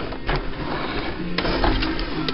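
Handling noise from a plastic toy RV being turned and shifted on a wooden floor: rough rubbing with a few light plastic clicks, several close together in the second half.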